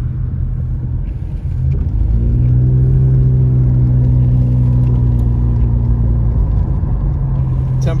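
A car heard from inside the cabin while driving: a steady low rumble of engine and tyres on the road. About two seconds in, a louder droning engine note with a clear pitch comes in, holds for about four seconds, then drops back to the rumble.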